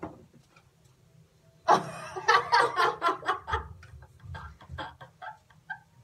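A woman bursts out laughing after a near-silent second or two. A quick run of short laughs follows and gradually trails off.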